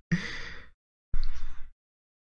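A man laughing softly under his breath: two short breathy exhalations about a second apart.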